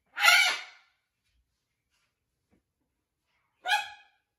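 Two short harsh macaw calls: a louder, longer squawk right at the start and a briefer call with a clearer pitch near the end, with quiet between.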